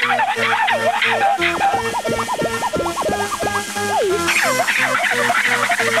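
Electronic dance music from a rave DJ set: a fast track with a repeating bass pattern and synth notes that swoop up and down in pitch, filling out again about four seconds in.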